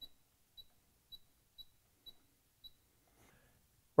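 Pioneer DEH-X7500S car stereo giving six short, high-pitched electronic beeps about half a second apart as its control knob is turned step by step through the display colour settings.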